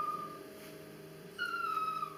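A dog whining twice, each a thin, high whine under a second long that falls slightly in pitch: one trailing off just after the start, another beginning about one and a half seconds in.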